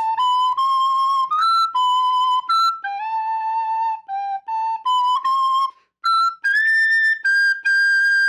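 Soprano recorder playing a chorus melody of single, clear notes, with a short break about three-quarters of the way through. The second phrase climbs into the upper register and ends on a long held high note, the high sol and la played by blowing harder with the thumb hole half open.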